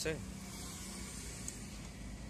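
A steady low background hum with a faint even tone, and one faint click about a second and a half in.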